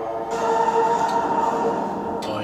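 An action film's soundtrack playing in the room: a steady dense wash of noise with one held tone over it.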